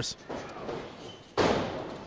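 A single heavy thud of a wrestler's body hitting the ring mat about two-thirds of the way in, with a ringing, echoing tail.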